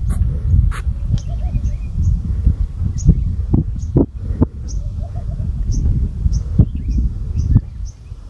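Wind rumbling on the microphone of an outdoor recording, with short high bird chirps repeating about every half second and a few sharp knocks in the middle.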